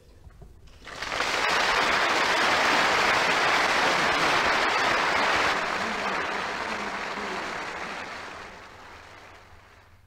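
Large audience applauding at the end of a speech, rising about a second in, holding strong for several seconds, then dying away.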